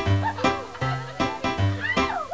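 Television show title-sequence music with a steady beat of about two and a half strikes a second, with short sliding pitched sounds over it.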